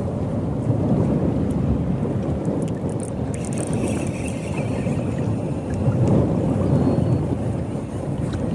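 Wind rumbling on the microphone in gusts over open water, a low rushing noise that swells and eases.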